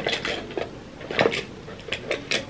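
Small plastic cosmetic cases and lipstick tubes clicking and clacking together as they are handled, a handful of sharp separate clicks.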